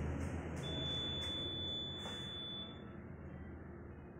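An electronic voting machine giving one long, steady, high-pitched beep of about two seconds, the signal that a vote has been recorded, over a low room murmur with a few faint clicks.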